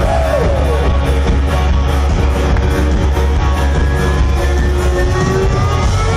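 Electro-rock band playing live through a concert PA: a loud, steady, heavy bass and drum beat with guitar and synth lines above it.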